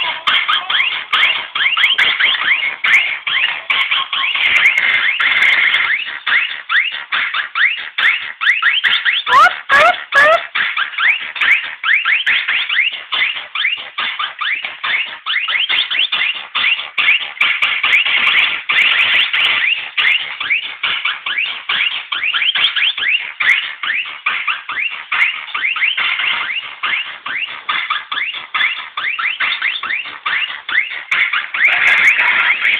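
Budots electronic dance music playing through a small speaker: a synth line of rapid chirping pitch sweeps over a quick pulse, with little bass.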